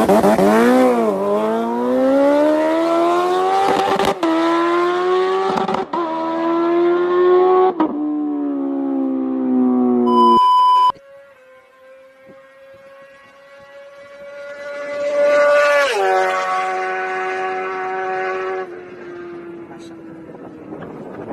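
A Kawasaki sport bike accelerating hard, its engine pitch climbing and dropping back at three upshifts in the first eight seconds. A brief steady beep about ten seconds in, then a second motorcycle approaching at speed, its engine dropping in pitch as it passes near sixteen seconds and running away.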